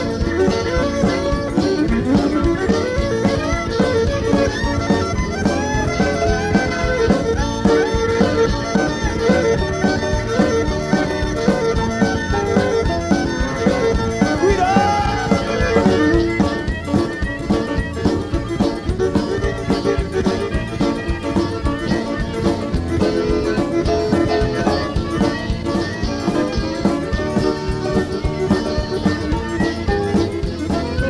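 Live zydeco band playing an instrumental stretch from the mixing-desk feed: accordion and fiddle melody lines over drums, bass, guitar and piano. About halfway through, a sharper, even high rhythm comes forward in the mix.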